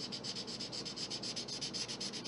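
Marker tip rubbing across paper in rapid back-and-forth strokes, about ten a second, filling in colour.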